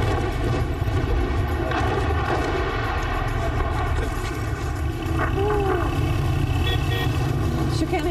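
Motorcycle engine running at a steady road speed, with a constant low rumble of engine and wind on the microphone.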